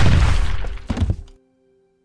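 A sudden loud hit at the start with a noisy tail that fades over about a second, a smaller second hit about a second in, over faint held music notes; then the sound drops to near silence.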